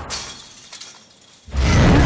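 Film sound effects: a sharp, glassy shattering right at the start that fades out, then after a lull a sudden loud, deep rush of sound about a second and a half in, with music under it.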